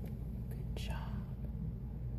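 A person whispering briefly about a second in, over a steady low rumble and a few faint clicks.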